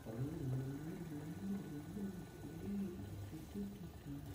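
A low tune of held and gliding notes, played by a computer spinner-wheel game while the wheel spins.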